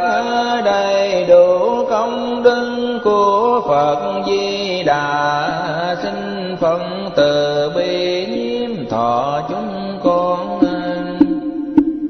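Vietnamese Buddhist repentance verses (sám hối) chanted in a melodic, sung style by a monk, the voice gliding between long held notes. Near the end a single low note is held steadily.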